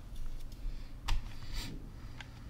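A low steady hum with a single short, sharp click about a second in and a softer hissing sound about half a second after it.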